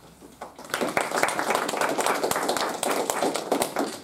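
Applause from a small group of people clapping hands in a small room. It starts just under a second in and stops sharply near the end.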